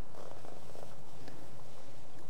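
Soft rustling and handling of a silk brocade drawstring pouch and its cord as it is untied, strongest during the first second, with a few faint ticks.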